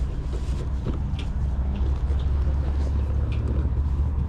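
Soft rustling of a plush toy being handled close to the microphone, over a steady low rumble that grows a little stronger after about a second.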